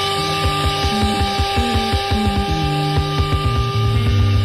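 Instrumental passage of early-1970s British blues-rock: a long chord held steady up high while the bass steps through several notes beneath it, over a quick even pulse of about six strokes a second.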